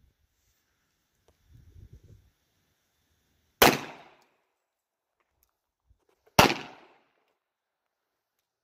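Two shots from a Tisas 1911A1 Service .45 ACP pistol, a little under three seconds apart, each a sharp crack that dies away in about half a second.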